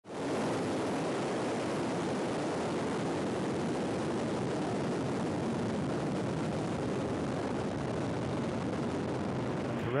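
Soyuz rocket engines firing at liftoff and through the climb: a steady, deep rushing noise with no break.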